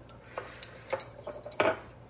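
Several light clinks and knocks of cookware being handled on a gas stovetop, spaced irregularly, the loudest near the end.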